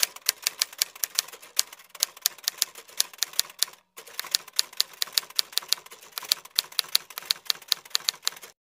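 Typewriter keystroke sound effect: a rapid run of key clicks, about seven a second, with a brief pause about four seconds in, keeping time with text being typed onto the screen.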